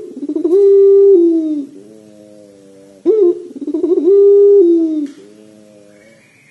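Puter pelung, a long-voiced domestic Barbary (ringneck) dove, cooing twice about three seconds apart. Each coo is a short rising note followed by a long held note that slides down at the end.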